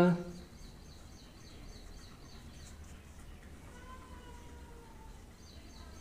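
Quiet, steady background noise with a low hum, and the tail of a spoken word at the very start. A few faint thin tones come and go, one around the middle.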